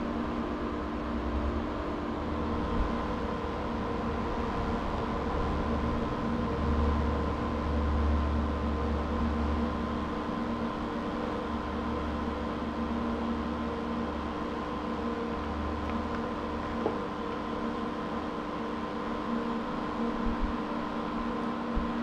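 Steady machine hum made of several constant tones over a low rumble, which grows a little louder in the middle and then settles.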